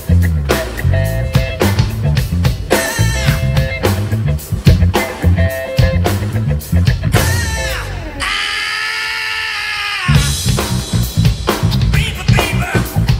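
A funk-influenced band playing: drum kit, electric bass and electric guitar in a busy groove. About seven seconds in, a falling glide leads into a held chord while the drums and bass drop out for about two seconds, then the full band comes back in.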